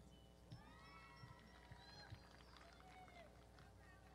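Near silence with faint, distant voices calling out.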